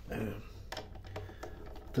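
Gloved hands handling a heavy battery cable: light clicks and rustling, over a low steady hum.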